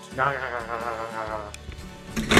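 A sung or hummed voice holding one wavering note with vibrato for about a second and a half, then stopping.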